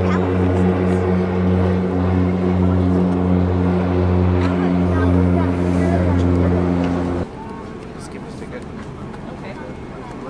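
A cruise ship's horn sounding one long, deep, steady blast that stops suddenly about seven seconds in, leaving low crowd chatter.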